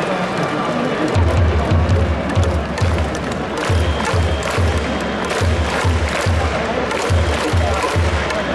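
Baseball stadium crowd noise with music over the PA. A steady low beat of about two to three thumps a second starts about a second in, with many short sharp claps and clicks from the stands.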